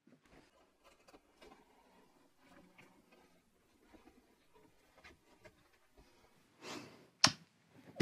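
Mostly quiet room with faint, scattered small knocks and clicks from handling a hand brace and auger bit. Near the end comes a short breathy rush, then one sharp click.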